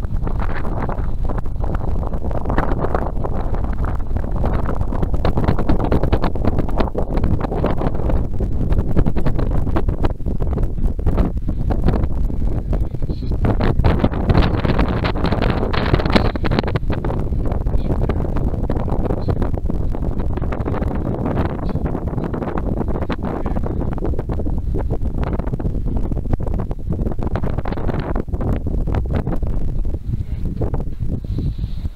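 Wind buffeting the camera microphone: a loud, uneven rumbling that swells and eases in gusts.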